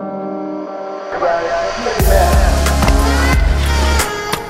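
Background music: soft sustained keyboard chords give way about two seconds in to a loud beat with heavy bass and sharp percussion hits.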